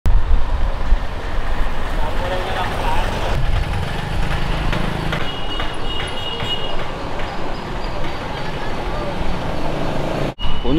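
Busy street ambience: a steady low rumble of traffic with people's voices nearby.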